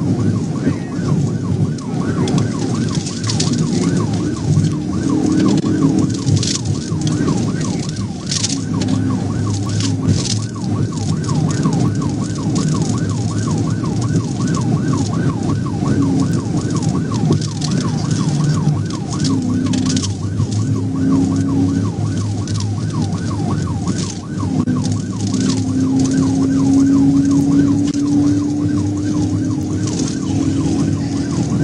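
Police cruiser's siren sounding in a fast, repeating up-and-down yelp during a high-speed pursuit. It is heard from inside the car over steady engine and road noise.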